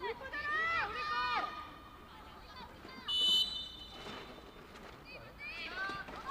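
Referee's whistle blown once, a steady shrill tone lasting just under a second about three seconds in, signalling the restart of play after a cooling break. Before it, high-pitched shouts of women players calling out on the pitch.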